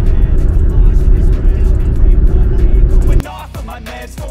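Loud, steady low rumble of road and engine noise inside a car's cabin at highway speed, cut off abruptly a little after three seconds by rap music.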